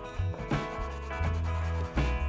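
A soft chalk pastel stick rubbing and scraping across paper as a swatch is drawn, over background music with a steady bass line.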